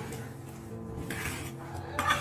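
Floor tiles being handled and set by hand, with light scraping and clinking of tile and tool, over steady background music.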